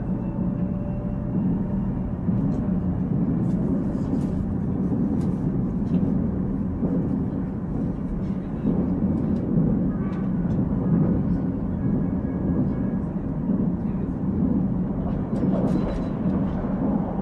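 Inside a Korail Nuriro passenger train car while it runs: a steady low rumble of wheels and running gear on the track, with scattered light clicks and rattles from the car.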